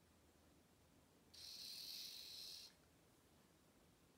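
Faint, steady high-pitched whir of the Ozobot Evo robot's tiny drive motors, lasting about a second and a half in the middle, as it spins in place to signal a correct guess.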